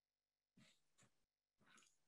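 Near silence: room tone, with three faint, brief soft sounds.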